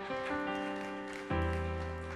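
Sustained keyboard chords, held steady, changing about a second in as a deep bass note comes in.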